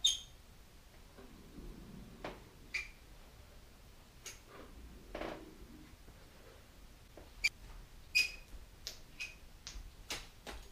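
A hand caulking gun laying beads of glue: scattered sharp clicks and short squeaks from its trigger and plunger rod at irregular intervals, one louder squeak right at the start, with a soft squish of adhesive in between.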